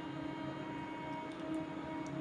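A steady low hum, with a couple of faint light ticks from knitting needles being worked, one about one and a half seconds in and one at the end.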